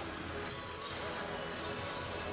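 Basketball arena din: crowd chatter and music, with basketballs bouncing on the wooden court as players warm up.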